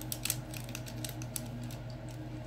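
Makeup brushes being rummaged through while looking for a flat shader brush: a run of small irregular clicks and light rattles as the brush handles knock together.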